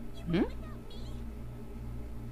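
A short, rising, questioning "mm?" from a voice, over a steady low hum.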